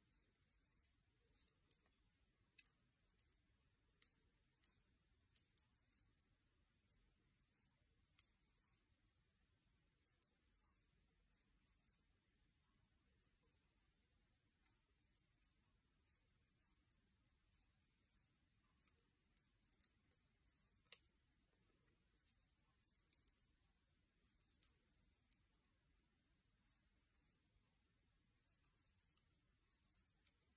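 Faint, irregular clicking of wooden double-pointed knitting needles tapping together while knitting a round of knit stitches, with one sharper click about two-thirds of the way through.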